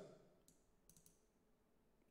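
Near silence with two faint computer mouse clicks, about half a second and a second in.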